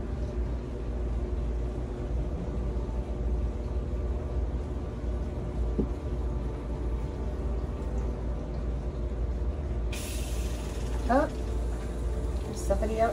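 Steady low mechanical hum with several held tones under it. A hiss comes in suddenly about ten seconds in, and a short rising sweep follows near the end.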